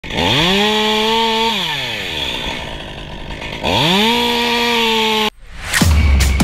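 Top-handle chainsaw opened up to full speed and held at a steady high pitch, then let off so it winds down, then opened up and held again. The sound cuts off suddenly near the end.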